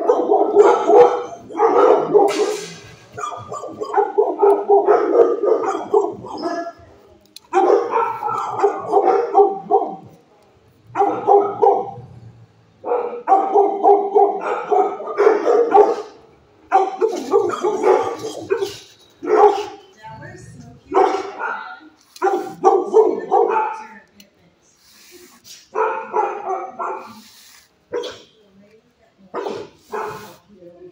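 A dog howling in a string of long, drawn-out calls, each one to three seconds, with short gaps between them.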